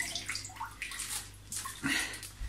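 Water splashing and dripping irregularly as a sealed zip-lock bag of steaks is lifted out of a pot of water.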